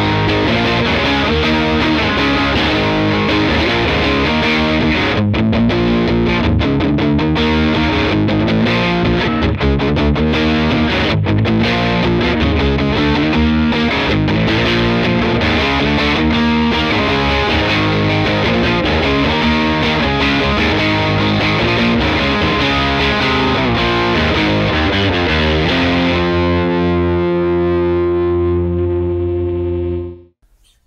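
Strat played through a SonicTone Royal Crown 30, a cathode-biased four-EL84 tube amp, on channel 2 with the gain on 10 in the cool setting: heavily distorted rock riffs and chords. Near the end a single chord is left ringing for a few seconds, then cut off.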